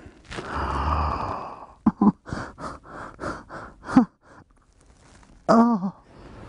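A man breathing hard through an involuntary arousal spasm of persistent genital arousal syndrome: a long heavy exhale, then quick panting gasps about three to four a second, then a short groan near the end.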